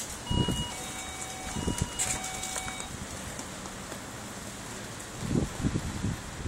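BMX bike tyres thumping on concrete as the rider hops the bike to hold a track stand, a few dull knocks near the start and a cluster near the end. A two-note tone, high then lower, sounds twice in the first three seconds.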